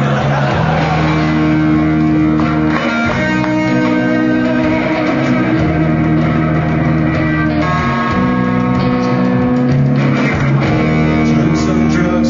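Live rock band playing an instrumental passage: electric guitars and bass holding sustained chords that change every second or two.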